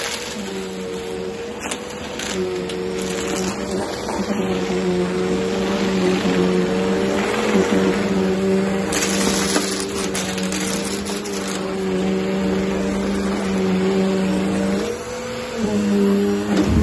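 Bissell upright vacuum cleaner running on a rug. The motor hums steadily, its pitch wavering slightly as it is pushed back and forth, with scattered crackles as debris is sucked up. The motor note dips briefly near the end.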